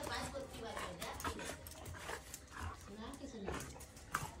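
A golden-coated dog making soft, faint vocal sounds close by, with faint voices.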